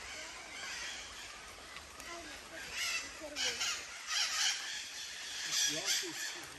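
Faint, distant voices of people talking, over outdoor background noise, with a few short scuffing sounds in the second half.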